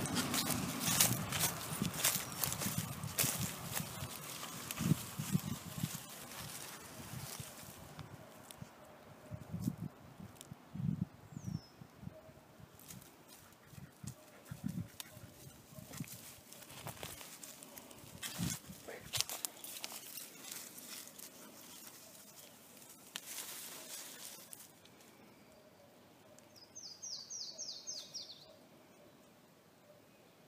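Irregular crunching and rustling footsteps in dry leaves and pine straw, busy at first and thinning out after about two-thirds of the way. Near the end a bird gives a short, quick trill of about seven high notes.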